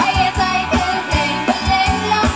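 Live band playing Thai ramwong dance music, with a steady drum beat, bass and a wavering melody line.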